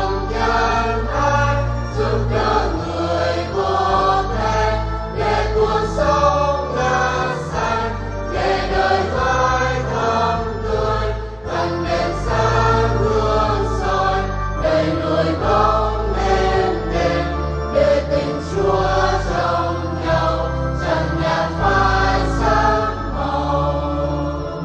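Church choir singing a hymn with instrumental accompaniment, sustained bass notes changing every second or two beneath the voices.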